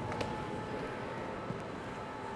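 Steady background hum of a large gym with a thin, faint steady whine, and a couple of faint light clicks.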